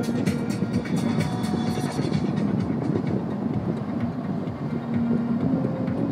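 Steady road and tyre noise inside a car moving at highway speed, with music playing over it. The music's crisp, fast beat drops away about two seconds in, leaving mainly the low road rumble.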